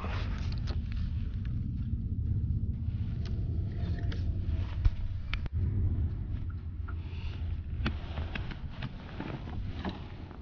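A steady low rumble with a few light clicks and taps of fishing tackle being handled, one sharper click about five seconds in.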